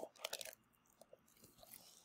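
Near silence with faint crinkling of plastic packaging being handled, in two short spells.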